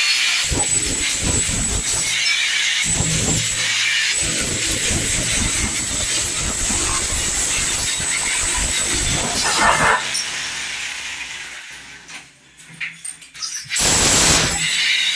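Steel chisel breaking old ceramic wall tiles off the plaster: repeated strikes and scraping, with tile shards clattering down. The noise stops about ten seconds in and fades to a few scattered knocks, then starts up again near the end.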